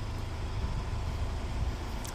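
Wind rumbling on a phone's microphone outdoors: a low, uneven rumble with no distinct events.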